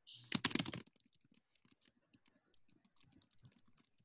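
Typing on a computer keyboard: a quick, loud run of keystrokes in the first second, then scattered faint key clicks.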